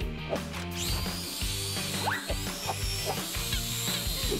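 Background music with added video-game-style sound effects: several short rising zips and a high, slightly wavering tone that runs from about a second in until near the end.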